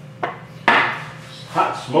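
Spice containers handled on a wooden tabletop: a light knock, then a short, louder clatter as one is set down or picked up.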